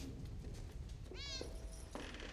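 A cat meowing once, a short call that rises then falls in pitch, about a second in, over a low steady background hum.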